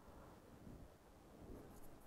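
Faint scratching of a pen writing on paper, a few short soft strokes over near silence.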